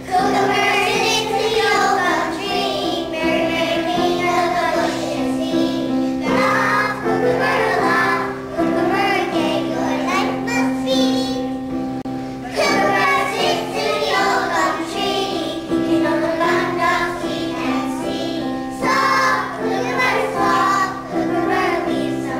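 A group of young children singing a song together in unison over a steady instrumental accompaniment.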